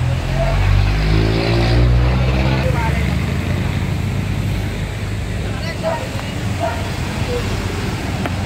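Motor vehicle engine running close by on the road, its pitch gliding up and down about one to three seconds in, with people talking in the background.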